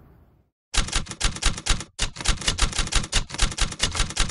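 Typewriter key-strike sound effect: a rapid run of sharp clicks, about eight a second, with a brief break about two seconds in. Faint outdoor wind fades out just before the clicking starts.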